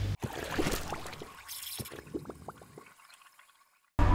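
A faint liquid trickling and gurgling with short bubbly pitch glides, fading away to silence over about three seconds.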